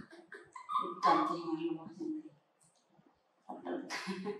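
Baby macaque whimpering in a short, wavering cry about a second in.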